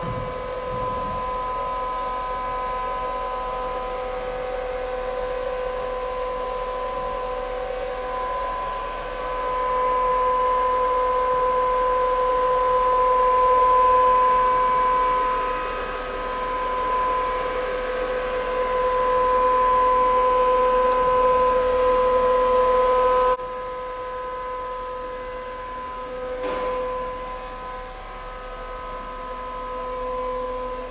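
Fanuc RoboDrill α-T14iA vertical machining center running under power, giving a steady whine with a couple of clear tones. It swells louder about a third of the way in and drops back sharply about two-thirds through.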